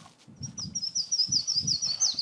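A small songbird singing a rapid trill of high chirps, about seven or eight notes a second, beginning about half a second in.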